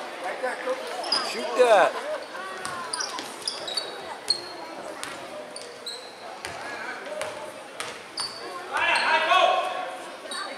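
Basketball game play on a hardwood gym floor: a ball bouncing, short high sneaker squeaks, and spectators' voices calling out near the end, all ringing in a large echoing gym.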